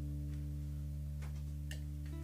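A low, steady musical drone of several held tones that does not fade, likely a sustained chord left ringing from the band's instruments or effects. A few faint clicks or taps sound over it in the second half.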